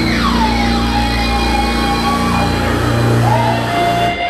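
Live rock band's closing note held out over a steady low drone, with a high tone sliding downward and wavering above it, then stopping.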